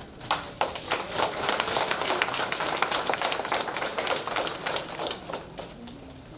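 Audience applauding, the clapping starting just after the beginning and dying away near the end.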